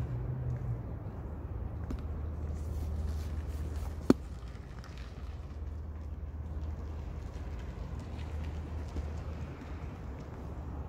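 Low steady rumble of vehicles with the camera operator's footsteps on pavement, and one sharp click about four seconds in.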